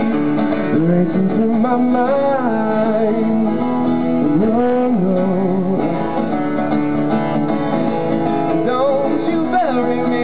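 A man singing a slow song over his own strummed acoustic guitar, performed live.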